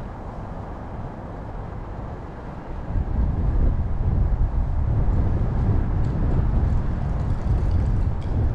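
Wind buffeting the microphone as a gusty low rumble that gets much louder about three seconds in, over faint city street ambience.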